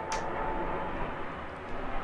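Steady low background rumble, with a brief rustle right at the start as a fabric zip pouch is handled.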